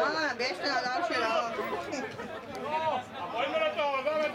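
Chatter of several voices talking and calling out over one another, from the players and onlookers at an amateur football match.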